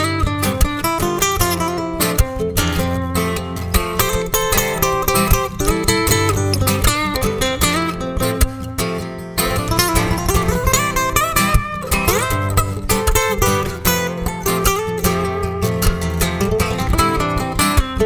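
Acoustic guitar playing an instrumental passage, with quick plucked notes and strums and a few sliding notes about eleven seconds in.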